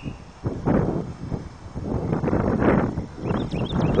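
Irregular footsteps scuffing on dry dirt as someone walks with a handheld camera, with some rustling between the steps.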